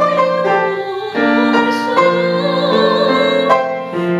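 A woman singing in classical style with vibrato, accompanied by a grand piano. The voice breaks off briefly about a second in while the piano chords carry on, then the singing resumes.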